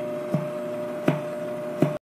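Victor Electrola RE-45 electric pickup riding the run-out groove of a 78 rpm shellac record at the end of the side: a click once per turn of the disc, three in all about three-quarters of a second apart, over a steady amplifier hum.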